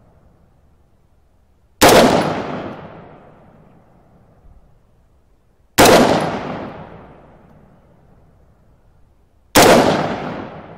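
Three rifle shots about four seconds apart, each followed by a long fading echo, as 75-grain hand-loaded rounds are fired over a chronograph.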